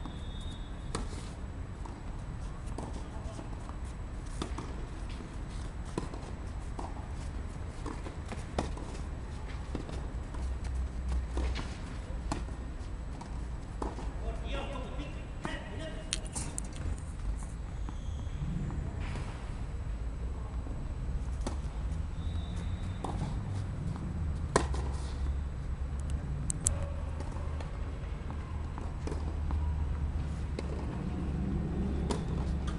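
Tennis rally on a clay court: a racket striking the ball and the ball bouncing make scattered sharp pops, over a steady low rumble.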